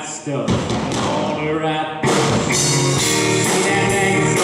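Live rock band of electric guitar, drum kit and voice: the music breaks off just after the start, a voice and guitar carry a short gap, and the full band comes back in with a steady drum beat about two seconds in.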